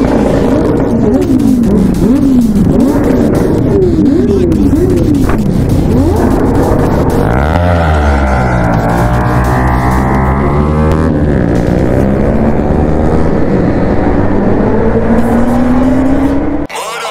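Several motorcycle engines revving in repeated throttle blips as the group pulls away, then the camera bike, a TVS Apache RR310 with a single-cylinder engine, accelerating with its pitch rising near the end.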